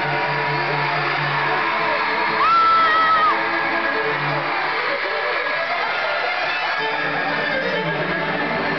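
Live rock band playing, recorded from the audience, with electric guitars prominent. About two and a half seconds in, a loud high note is held for under a second, the loudest moment.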